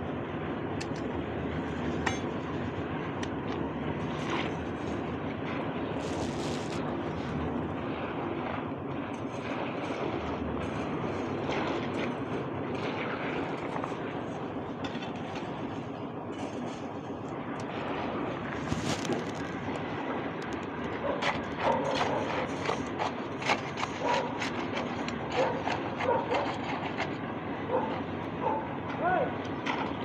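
Construction-site machinery engine running steadily during a concrete slab pour. In the last third, sharp knocks and short calls sound over it.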